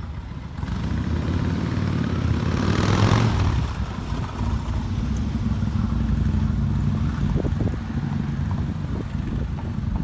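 City street traffic: engines running low and steady, with a vehicle passing that swells to a peak about three seconds in.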